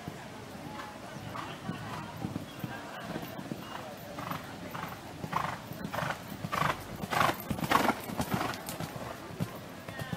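A horse cantering on a sand show-jumping arena: its hoofbeats come in a regular stride rhythm, about two a second, loudest between about five and nine seconds in as it passes close by.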